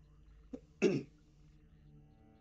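A person clearing their throat once, a short burst about a second in, just after a small click.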